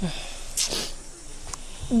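A person's short, hissy breath about half a second in, then a sigh at the end as the next line of speech begins.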